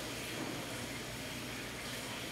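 A water fountain running: a faint, steady rushing hiss.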